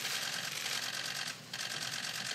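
Many camera shutters clicking rapidly and overlapping in a dense clatter, easing off briefly about a second and a half in.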